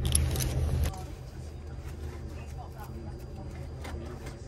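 Aircraft seatbelt being fastened: the metal buckle clicks into its latch and the webbing strap rustles as it is pulled and adjusted, over the steady low hum of the airliner cabin.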